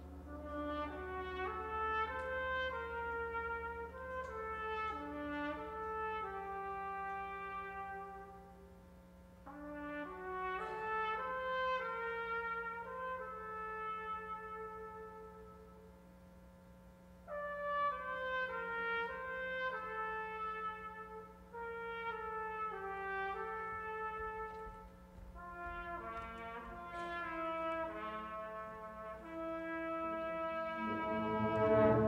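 Soft music with brass-like tones: several notes sounding together in gently moving melodic lines, in four phrases with short dips in loudness between them.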